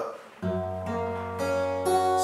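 Steel-string acoustic guitar with a capo: an E-shape chord strummed about half a second in and left ringing, then a second strum near the end as the fretting hand slides up into the F sharp minor shape.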